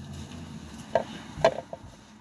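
Two sharp knocks about half a second apart as makeup things are handled and set down on a hard surface, over a faint low rumble.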